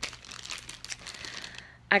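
Packaging being handled and crinkled: a continuous run of rustles and fine crackles that stops shortly before speech resumes near the end.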